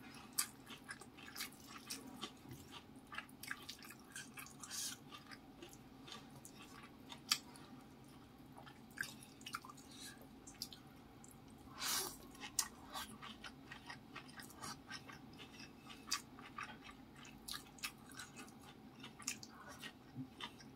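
Close-miked chewing and wet mouth sounds of someone eating rice, fish and leafy greens by hand: many small, irregular sticky clicks and smacks, with one longer, louder wet sound about twelve seconds in. A faint steady hum runs underneath.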